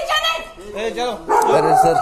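Raised voices in a heated argument, a woman shouting in a high-pitched voice, loudest from about halfway in.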